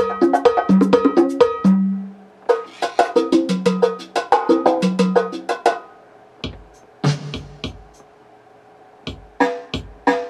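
Roland Octapad SPD-30 phrase loops playing back one after another as short previews: Latin percussion patterns of hand drums and cowbell, with a short break between them. The later patterns are sparser, with deep bass-drum thumps, and there is a quieter stretch shortly before the end.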